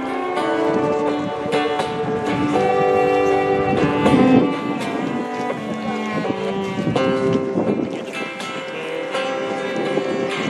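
A small group playing holiday music, with saxophone and acoustic guitar holding long, steady notes.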